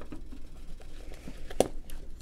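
Hands handling a canvas camera bag, with faint rustling and one sharp click about one and a half seconds in as the front pocket flap is unfastened and lifted.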